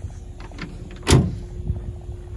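A single loud, sharp thump about a second in, with low rumbling handling noise and a few small knocks around it as the phone is carried close along the pickup's body.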